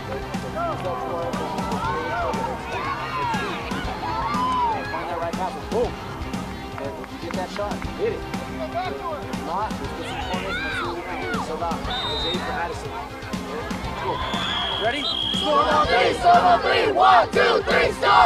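Background music with talking voices over it; near the end a group of young boys shouts a team cheer together, loud and in quick bursts, as their huddle breaks.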